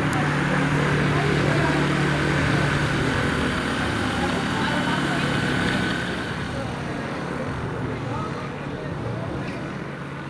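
AutoGyro MTOsport gyrocopter's engine and pusher propeller running steadily as it taxis past on the grass. The sound is loudest for the first six seconds or so, then fades as the gyrocopter moves away.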